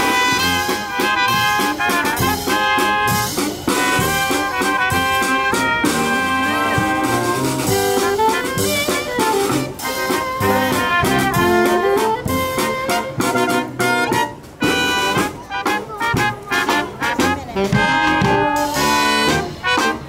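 A live brass band of trumpets, trombones, saxophone and tuba playing a bouncy, jazzy tune, with a marching bass drum and snare keeping the beat.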